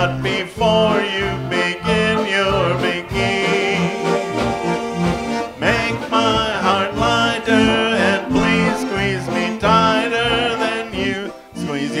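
A concertina played as an instrumental break: a reedy melody over a steady pulsing bass-and-chord rhythm.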